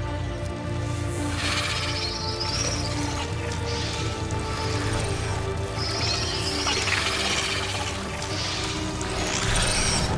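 Dark film score with sustained low tones. From about a second and a half in, high shrill sounds repeatedly swell over it.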